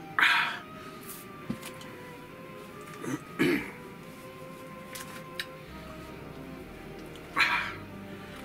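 A man coughing after gulping a drink: one hard cough at the start, a double cough about three seconds in, and another near the end. Soft background music plays underneath.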